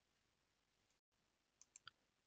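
Near silence: faint room tone, with a brief total dropout about halfway through and a few faint clicks near the end.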